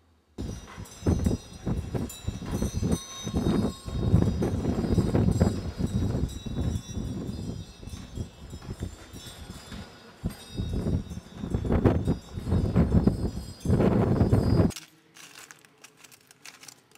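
Gusts of wind buffeting the microphone in an uneven low rumble, with small bells or chimes ringing high and thin above it. The sound cuts in suddenly just after the start and cuts off suddenly about a second before the end.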